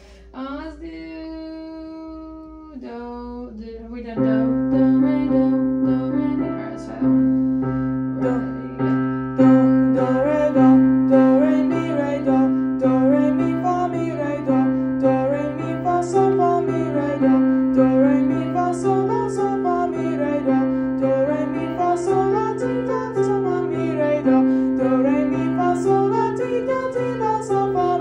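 Piano playing a vocal warm-up exercise, with a voice singing along. A few held notes come first, then from about four seconds in, short runs of notes go up and down about every two seconds, stepping gradually higher.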